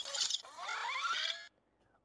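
Motorized faceplate of an Iron Man Mark L helmet opening on a voice command: small servo motors whirring with a rising whine, stopping about one and a half seconds in.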